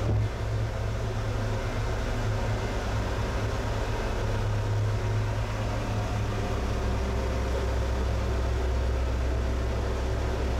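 Steady low mechanical hum of the glass-bottom boat's engine, heard from inside the hull. Its pitch drops lower about six and a half seconds in.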